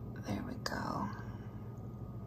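A woman speaking softly, half-whispered, for about a second near the start, with a brief click in the middle of it, over a steady low room hum.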